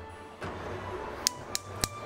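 Gas stove burner being lit: a hiss of gas as the knob is turned, then three sharp igniter clicks about a third of a second apart in the second half.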